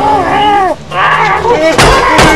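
Wordless yelling and screaming in a staged scuffle, then a sharp hit near the end as a broom strikes.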